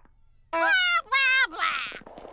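A cartoon character's wordless, high-pitched vocal cries: three short calls from about half a second in, the first two sliding in pitch, the third rougher and wavering.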